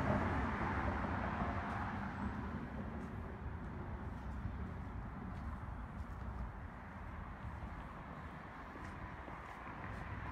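Steady outdoor background noise, a low rumble with a hiss that eases off slightly after the first couple of seconds, with a few faint clicks.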